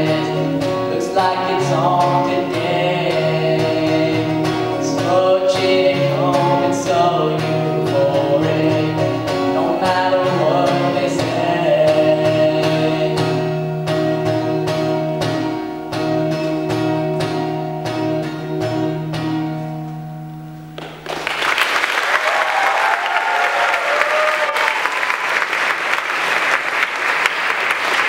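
Acoustic guitar strummed under a singing voice. The song ends on a final chord that fades about 21 seconds in. Audience applause and cheering then break out and carry on.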